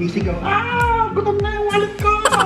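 Background music with a steady drum beat about twice a second, and a high, wavering melodic line entering about half a second in.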